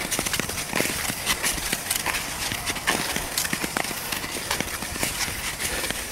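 Nordic skate blades on outdoor ice: a steady hiss of gliding with many short, irregular clicks and knocks from the strides.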